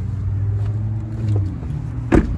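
Pickup truck's engine idling with a steady low hum.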